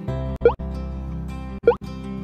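Two short pop sound effects, each a quick upward sweep in pitch, about a second apart, as the animated cursor presses the subscribe button. Soft background music runs underneath.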